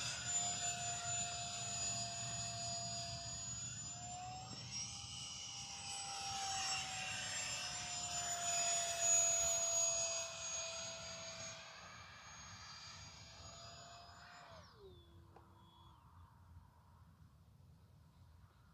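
E-flite Habu SS 70 mm electric ducted-fan jet, running on a 6S battery, whining steadily as it flies overhead, its pitch rising slightly and easing back as it passes. About fifteen seconds in, the fan whine drops sharply in pitch and fades away as it is throttled back to glide.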